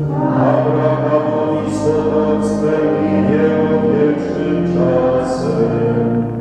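A group of voices singing a hymn together in slow, held notes, with no instrument clearly heard.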